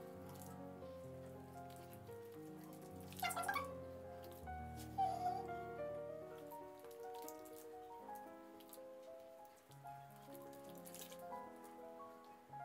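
Quiet background music of slow, held, overlapping notes. A couple of brief, faint noises break in at about three and five seconds in.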